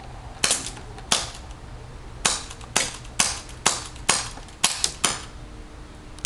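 HFC 1911 non-blowback gas airsoft pistol firing about ten shots, each a single sharp pop. The shots come unevenly, half a second to a second apart, with a gap of about a second after the second shot.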